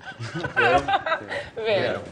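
A woman laughing and chuckling, mixed with speech.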